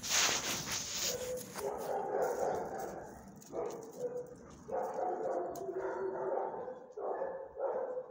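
Dogs barking and whining in repeated stretches of about a second each, after a rustling scuff in the first second.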